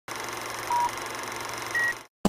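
Vintage film-countdown intro sound effect: a steady hiss of old film noise with two short beeps about a second apart, the second higher in pitch.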